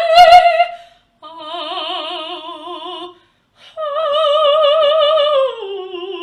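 A mezzo-soprano singing alone in three long held notes with wide vibrato, broken by short pauses. The last note steps down to a lower pitch near the end.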